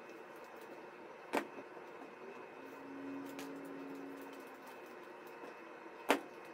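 One sharp plastic click about a second and a half in, as a small plastic sewing clip snaps onto the woven paper basket, with a fainter tap later. A faint low hum comes and goes in the middle.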